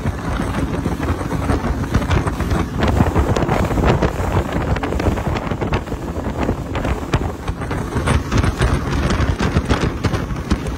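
Speedboat running fast over open sea: wind buffeting the microphone and hull spray splashing, with irregular sharp slaps of water that come more often near the end.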